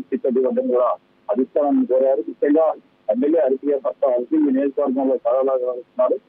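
A man speaking over a telephone line in continuous speech with brief pauses, his voice thin and narrow as through a phone.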